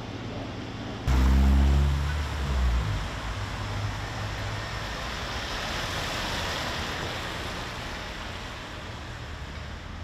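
A motor vehicle passing close by in the street: a sudden loud engine note about a second in that drops in pitch over a couple of seconds, followed by a rushing tyre-and-road noise that swells and then slowly fades.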